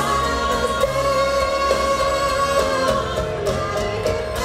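Live pop band playing, with a lead vocal and backing voices holding sustained notes over electric guitar and drums, heard from among the audience.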